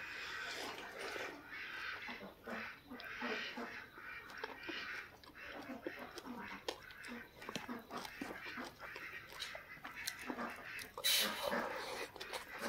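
Ducks quacking faintly in the background, a string of short, irregular quacks, with a louder burst near the end.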